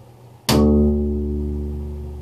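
Upright bass (double bass) open D string snapped: pulled away from the fingerboard and let go so it cracks back against the fingerboard, a sharp click about half a second in, then the low D note ringing and slowly fading.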